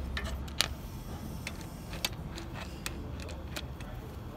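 Scattered light metallic clicks and clinks of hand tools and parts being handled, over a low steady hum.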